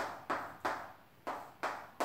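Chalk on a blackboard drawing short quick strokes: about five in two seconds, each starting sharply and fading, with a brief pause near the middle.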